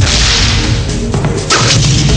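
Movie-trailer whoosh effects: a sharp whoosh at the start and another about a second and a half in, over a loud, low-pitched score.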